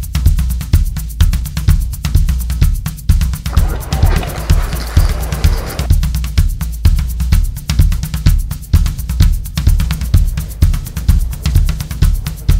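Solo drum-kit improvisation: a fast, even pattern of bass drum and snare strokes, with a hissing wash over the beat for about two seconds midway.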